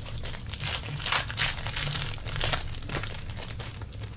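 Foil trading-card pack wrapper being torn open and crinkled by hand, a run of irregular crackling rustles.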